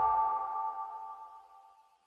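The fading tail of an electronic logo sting: a few steady ringing tones dying away, gone a little after the first second.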